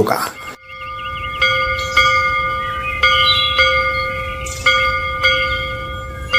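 Bells struck in pairs, each stroke ringing on with several steady tones layered over the one before.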